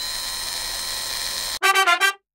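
Logo jingle music: a loud held chord whose top notes glide up into place, then cuts off and gives way to a quick run of short, punchy fanfare notes about one and a half seconds in.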